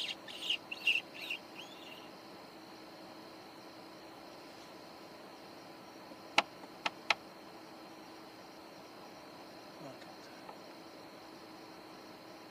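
Imitation mouse distress calls: a quick run of short, high squeaks in the first two seconds, made to draw a barn owl's attention. A steady high insect trill runs underneath, and three sharp clicks come about six to seven seconds in.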